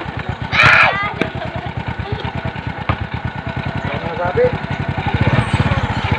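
Motorcycle engine idling with a fast, even putter. About half a second in, a short loud voice call rises over it.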